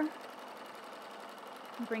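Domestic sewing machine running steadily as it free-motion stitches through a quilt.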